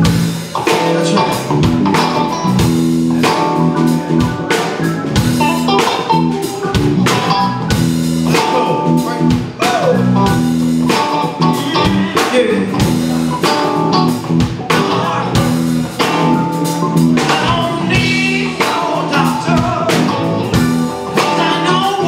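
Live rock band playing loudly: drum kit keeping a steady beat under electric guitars.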